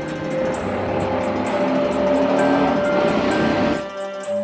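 A motorcycle passing by, its engine noise swelling to a peak a little past halfway and then cutting off suddenly near the end.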